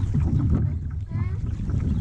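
Wind buffeting the camera microphone, a steady low rumble, with a faint short rising vocal sound about a second in.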